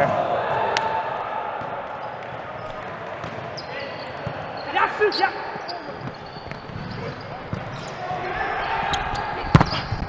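Volleyball rally on a gym court: sharp smacks of hands on the ball, the loudest near the end, over a murmur of players' voices and a few short squeaks around the middle.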